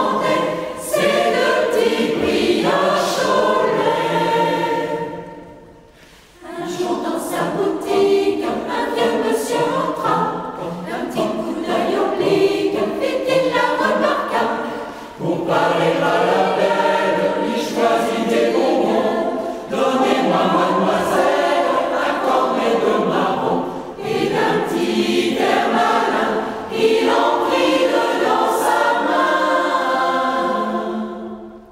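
Mixed choir of women and men singing a French song in parts, phrase by phrase, with a brief near-pause about six seconds in and shorter breaths between later phrases.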